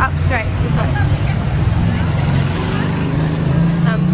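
Engine of a van running close by in street traffic, a steady low drone that rises a little near the end.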